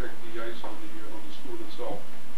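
Speech: a voice talking in a small room, the words not made out.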